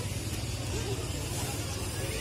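A steady low rumble with faint voices of people talking in the background.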